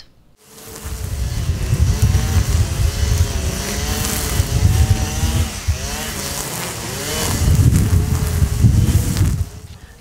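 Petrol string trimmer (brush cutter) engine running while it cuts grass. It starts about a second in and fades out near the end, its pitch rising and falling as the throttle is worked.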